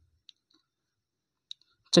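Two faint, short clicks about a second apart, with near silence between them; a man's voice starts right at the end.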